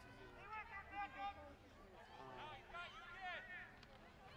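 Several faint voices shouting and calling out over one another across an open playing field, with a few high-pitched yells about halfway through as a youth football play gets going.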